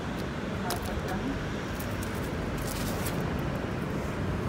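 Steady low rumble of city street traffic, with a few light clicks and taps from a bicycle being moved into place on the pavement.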